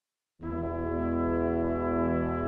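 Orchestral brass holding a sustained chord of several notes, coming in suddenly out of silence about half a second in.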